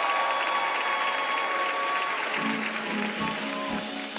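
Audience applauding while a live band holds sustained chords; low bass notes come in about halfway through as the song's intro begins.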